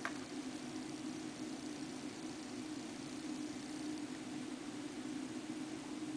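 Steady low hum under a faint even hiss: constant background noise, with no distinct event.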